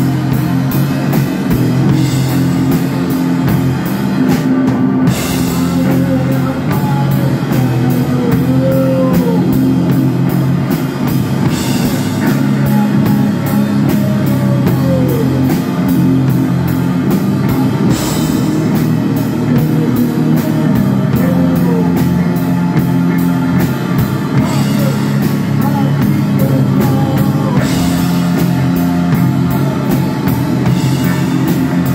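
Live heavy rock band playing loud: a heavily distorted electric guitar riff sustains low chords over a drum kit, with cymbal crashes a few times.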